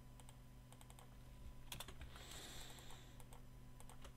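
Faint, scattered clicks of a computer keyboard and mouse over a low steady hum, with a soft brushing noise lasting about a second midway.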